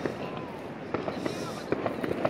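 Scattered New Year's fireworks and firecrackers going off, with several short sharp pops and cracks in the second half. A few voices can be heard faintly underneath.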